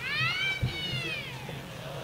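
A cat meowing: one long meow, over a second, that rises and then falls in pitch.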